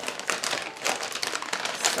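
Plastic bag of shredded mozzarella crinkling as it is handled and shaken out: a run of irregular crackles.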